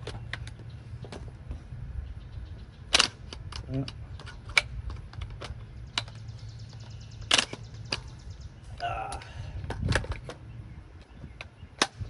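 Sharp metallic clicks and clacks of a Beretta ARX100 rifle being handled as its 10.5-inch quick-change barrel is fitted back into the receiver and locked in place. The loudest snaps come about three, seven and a half and ten seconds in.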